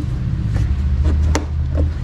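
Close handling noise from a gloved hand working behind a plastic car wheel-arch liner: a steady low rumble with a few light clicks and knocks.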